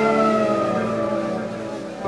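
Electric guitar holding a sustained note that slowly slides down in pitch over the band's held chord, fading slightly near the end.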